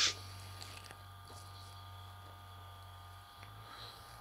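Quiet background with a faint, steady low hum and no distinct events.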